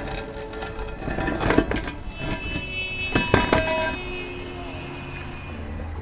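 Cast-iron manhole cover being pushed up and shifted on its metal frame, scraping and clanking, with sharp ringing metallic knocks about one and a half seconds in and a cluster of three around three seconds in. Background music plays underneath.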